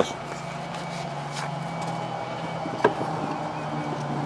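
A steady low mechanical hum under an even background noise, with a faint click about three seconds in.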